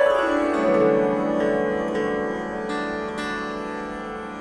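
Swarmandal strings swept downward in a quick falling glissando that lands on the low strings about half a second in. The strings then ring on together and slowly die away.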